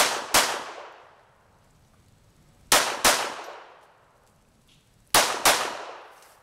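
Browning Model 1910 pistol in 7.65 mm Browning (.32 ACP) fired in three quick double taps, six shots in all, the pairs about two and a half seconds apart. Each pair trails off in echo.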